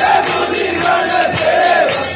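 Crowd of devotees singing an aarti hymn together in unison, over a steady beat of about four strokes a second.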